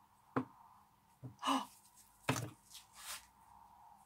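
A few short, soft knocks and handling noises of gloved hands working a silicone bath bomb mould and setting bath bombs down, with breathy exhalations in between.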